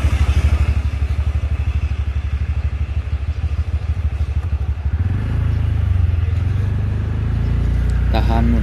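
Motorcycle engine running close by, with a fast, even low pulsing. About five seconds in the pulsing gives way to a smoother, steadier low rumble.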